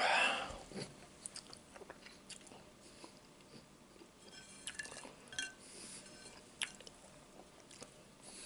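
Close-miked mouth sounds of a man chewing crispy bacon: small wet smacks, clicks and light crunches, with a louder crackly stretch about halfway through. It opens with a loud breathy exhale from the open mouth, falling in pitch and lasting about half a second, just after a drink from a can.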